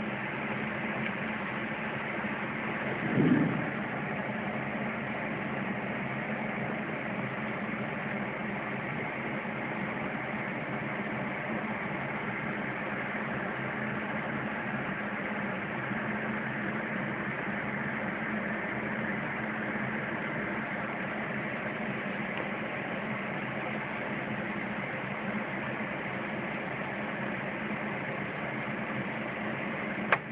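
A steady machine-like hum over an even hiss, unchanging in level, broken once by a brief short sound about three seconds in.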